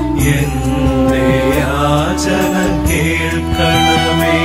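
Christian devotional hymn sung over steady instrumental accompaniment, the voice holding long notes that bend in pitch.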